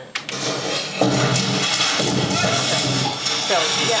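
A film soundtrack playing loudly through studio monitor speakers: music mixed with noisy sound effects. It jumps up sharply about a second in.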